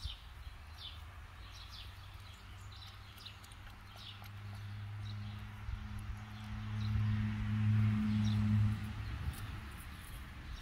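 Small birds chirping in short falling notes, mostly in the first few seconds. From about two seconds in there is a low steady hum that grows louder near the end and stops about a second before the end.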